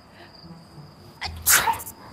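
One loud sneeze about one and a half seconds in, over a steady high cricket trill.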